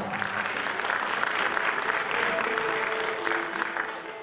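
Audience applauding, with a few faint instrument notes underneath.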